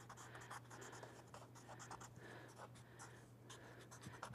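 Faint scratching of a graphite pencil shading on drawing paper in many quick, short strokes.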